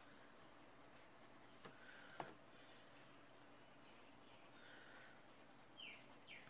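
Faint scratching of a colored pencil on paper as it traces the outline of a drawing, with a couple of small sharp ticks about two seconds in.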